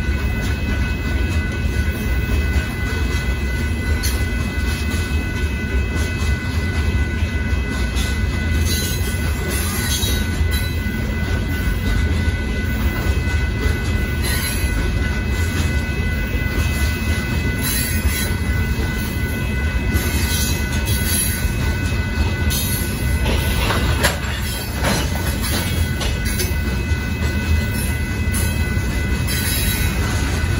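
Freight cars of a Union Pacific gravel train rolling steadily past over a grade crossing: a continuous low rumble of wheels on rail, with brief high-pitched wheel squeals now and then.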